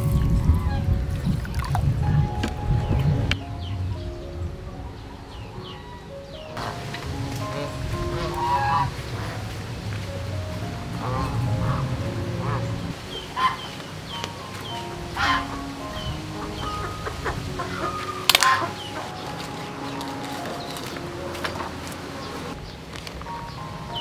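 Domestic fowl honking, a few short loud calls scattered through the middle, over background music of steady held notes. In the first few seconds there is a low rushing of water being poured into a bowl.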